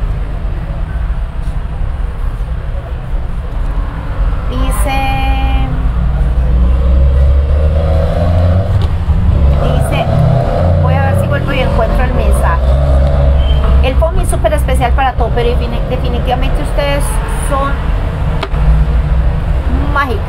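Indistinct talking over a steady low rumble, with a short pitched tone about five seconds in.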